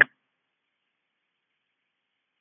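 Silence: the tail of a spoken word cuts off right at the start, then nothing at all.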